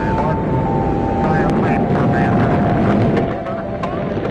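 Deep, steady rumble of a rocket launch, with faint radio voices and a thin steady tone running over it.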